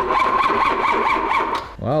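Starter motor cranking the BMW E32 740i's 4.0-litre V8 in an even rhythm of about five pulses a second, cutting off near the end without the engine firing: the engine turns over but is not getting fuel.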